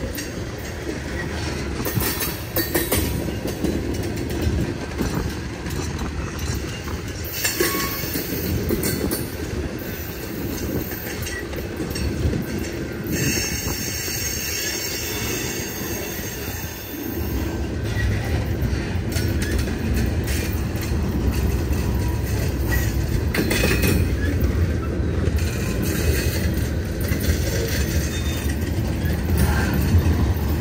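Freight cars (tank cars and covered hoppers) rolling past close by: a steady rumble of steel wheels on rail with clattering over the rail joints. High wheel squeals come and go, about a third and half of the way through. The rumble grows heavier and louder in the second half.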